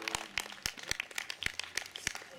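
Sparse, irregular hand claps from a small audience after a song. The band's last chord fades out just after the start.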